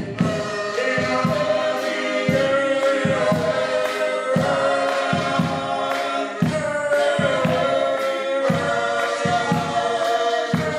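Male gospel vocal group singing in close harmony, held notes over a steady rhythmic accompaniment.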